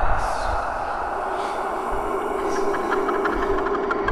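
Dark, droning horror soundtrack: a steady hum-like drone with low rumbling thuds and faint whooshes coming back about once a second.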